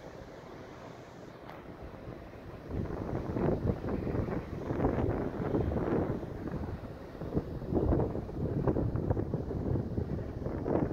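Wind buffeting the microphone in uneven gusts, picking up about three seconds in over a low, steady background rumble.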